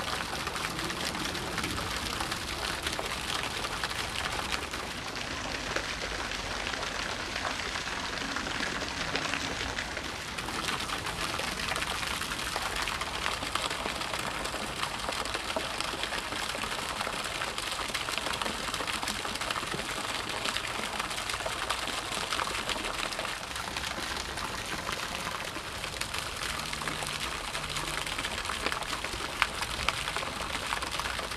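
Garden pond fountain splashing steadily: a constant, rain-like patter of falling water.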